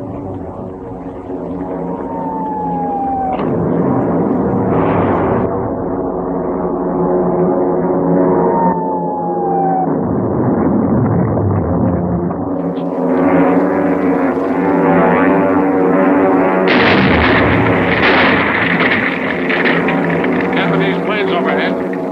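Film soundtrack of a droning rumble of approaching engines growing steadily louder, with dramatic music and two falling whistle-like glides in the first half; the sound swells fuller in the second half.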